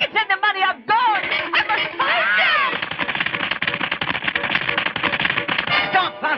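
Cartoon voice cries with no clear words over background music. After about two seconds they give way to busy, fast-moving music.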